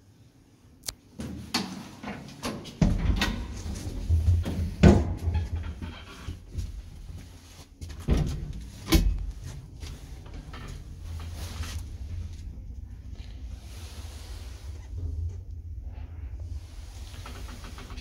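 An old ZREMB Osiedlowy passenger lift: knocks and thumps as its doors shut, two heavy clunks about eight to nine seconds in as it sets off, then the steady low hum of the car travelling in the shaft.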